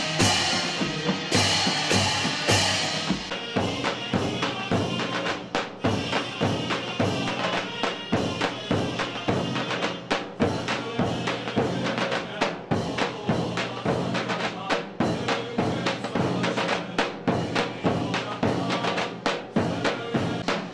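Ottoman Mehter military band playing: zil cymbals crashing and drums beating in a steady march rhythm, with a shrill zurna melody over them. The cymbal crashes are strongest in the first few seconds.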